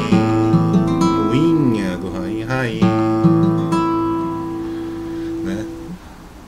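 Nylon-string classical guitar strummed in chords to accompany a hymn, the chords ringing on and fading toward the end, with a man's voice singing along in places.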